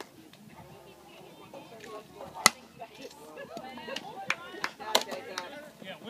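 A baseball bat hitting the ball: one sharp crack about two and a half seconds in, the loudest sound, followed by several lighter clicks and faint spectator voices.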